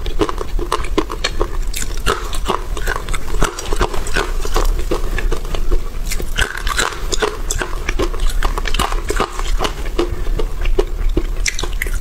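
Close-miked mouth sounds of someone biting and chewing dry-roasted chickpeas: a quick, irregular run of sharp cracks and crunches. The chickpeas are baked without oil, which gives them a hard, brittle crunch rather than a crispy one.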